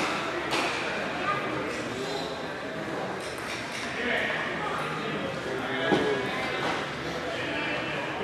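Indistinct background talk of people in a large hall, with a couple of light knocks.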